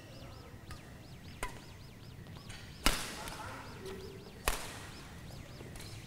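Badminton rackets striking a shuttlecock: three sharp cracks about one and a half seconds apart, the middle one loudest, over the echo of a sports hall. Faint high squeaks repeat in the first half.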